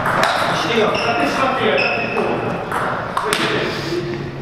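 Table tennis ball bouncing a few times between points, sharp irregular clicks, with voices talking in the hall.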